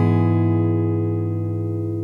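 Background music ending on a final strummed guitar chord that rings out and slowly fades.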